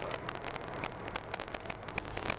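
Car driving, heard from inside the cabin: a steady low road and engine hum with many small clicks and crackles over it.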